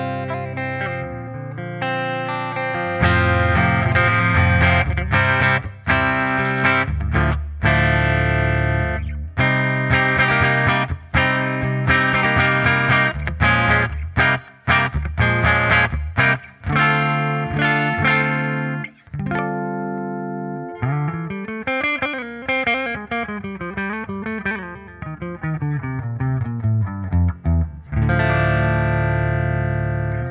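Ernie Ball Music Man Majesty electric guitar played clean through its neck pickup, picked chords and single notes ringing out. In the second half the pitch swoops up and down in slow arcs for several seconds.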